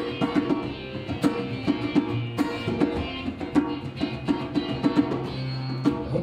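Acoustic guitar strummed alone in a steady, percussive rhythm, chords ringing between the strokes.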